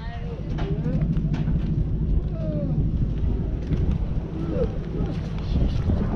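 Indistinct distant voices over a steady low rumble of wind on the microphone.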